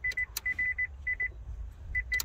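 Nissan Leaf's dashboard warning chime sounding in three bursts of quick, short high beeps, with a few light plastic clicks between them. The chimes are set off as the body control module board and its connector are handled, pointing to a fault where that connector meets the circuit board.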